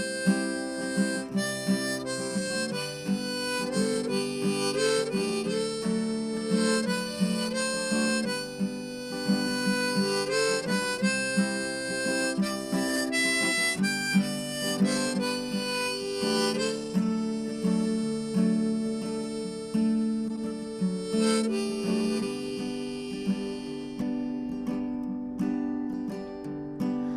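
Harmonica in a neck rack playing an instrumental break over a strummed Crafter acoustic guitar. The harmonica moves quickly between notes at first, then holds longer notes in the second half.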